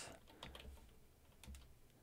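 Faint typing on a computer keyboard: a few scattered keystrokes against near silence.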